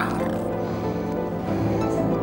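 Background music of long held tones with no clear beat, under a dramatic moment.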